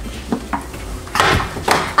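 Three short knocks and clatters of hard objects being handled and bumped on a kitchen counter.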